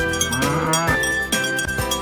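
Upbeat outro music with bright chiming bell notes. About half a second in, a short cartoon moo-like call slides upward over it.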